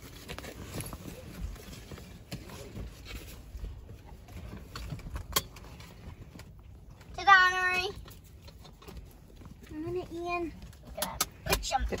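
Faint rustling and scattered clicks, as of pet rats shifting about in a mesh carry bag, with one short, high voice-like sound about seven seconds in and a briefer, softer one near ten seconds.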